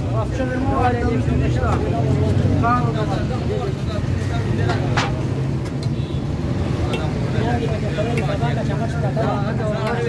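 Street ambience: several voices talking over a steady low rumble of road traffic, with a single sharp metal clink of steel serving ware about five seconds in.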